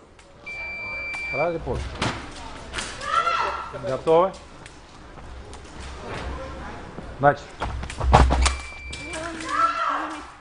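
Electric fencing scoring machine beeping a steady high tone about half a second in for about a second, and again briefly near the end as a sabre touch registers. Sharp thuds of stamping footwork on the piste, the loudest just before the second beep.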